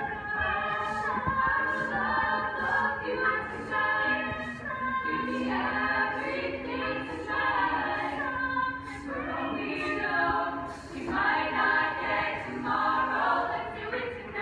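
Girls' a cappella group singing in close multi-part harmony without instruments, over a steady beat of short, hissing vocal-percussion hits about twice a second.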